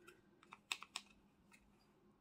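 A quick run of four or five faint clicks and taps from a clear plastic single-eyeshadow case being handled, all within the first second, then near silence.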